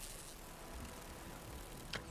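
Opening of a film trailer's soundtrack at low level: a steady ambient rumble and hiss, with faint sustained tones coming in about a second in and a short sharp tick near the end.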